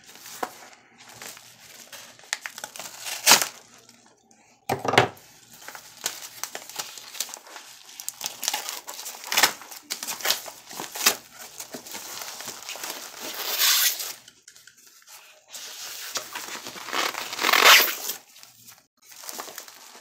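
A mailing envelope being torn open by hand, and the plastic wrapping of its contents crinkling as they are pulled out, in irregular bursts of tearing and rustling. Two sharp taps stand out about three and five seconds in.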